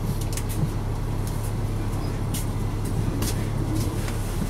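Caterpillar C9 diesel engine of a Neoplan articulated transit bus idling steadily, heard from inside the passenger cabin, with a few light clicks or rattles over it.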